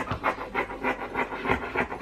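Fabric scissors cutting through soft fabric in a quick run of short snips, about five a second.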